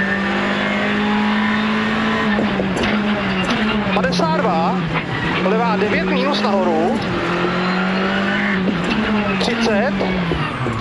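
Rally car engine heard from inside the cockpit, running hard at high revs with brief dips in pitch at gear changes and the note dropping near the end as the car slows for a tight corner, over road and tyre noise.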